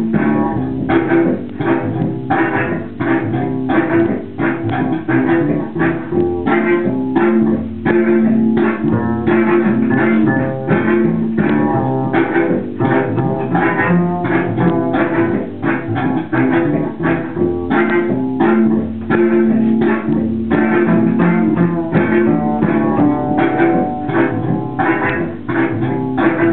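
Double bass played pizzicato, a dense, steady run of plucked notes layered over held low notes from a looper pedal.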